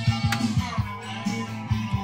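Music with a steady beat played from a vinyl record on a Dual 1257 turntable running at 45 rpm.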